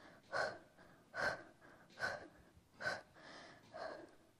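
A woman breathing hard from exertion during a toe-tap core exercise: five short, even breaths a little under a second apart.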